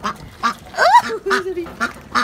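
White Pekin ducks quacking in several short calls as they crowd in and snatch food from a hand.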